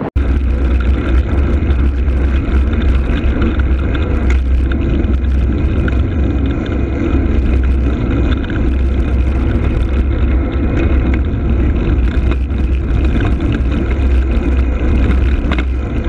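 Steady wind rumble and road noise on the microphone of a moving rider's camera, loud and continuous after a brief dropout right at the start.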